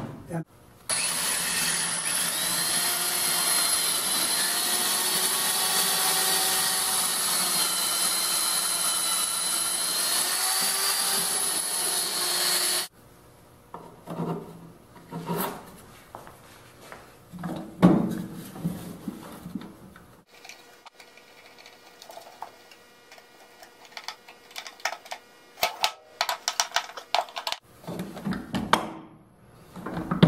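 Woodworking power tool motor running steadily for about twelve seconds, its pitch wavering slightly under load, then cutting off sharply. Scattered clicks and knocks of hand work on the caster hardware follow.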